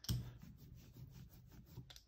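Rubber brayer rolling over a gel printing plate coated in acrylic paint: a faint rubbing, rolling sound with a few light clicks.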